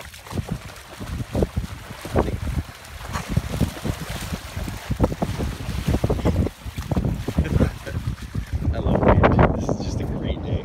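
Gusty wind buffeting the microphone, an uneven low rumble with repeated thumps.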